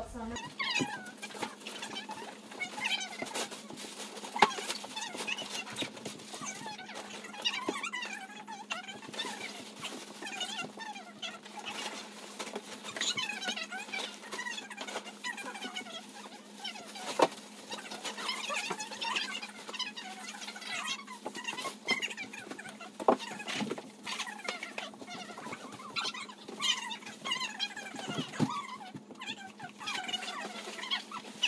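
Indistinct, unintelligible voices over the rustle and clatter of bags and belongings being handled and packed, with a few sharp knocks, the loudest about four seconds in and again about seventeen seconds in.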